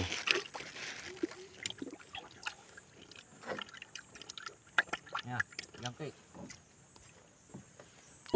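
Handling noise: scattered clicks, knocks and rubbing as a phone is moved about against clothing in a wooden canoe, with a few brief, faint muttered sounds from a voice in the middle.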